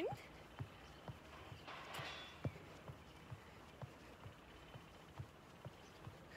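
Sneakers landing softly on a yoga mat over a wooden deck during fast mountain climbers, a steady patter of about two light thumps a second as the feet alternate.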